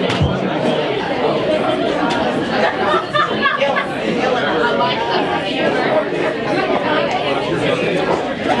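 Indistinct crowd chatter: many people talking at once in a busy room, steady throughout.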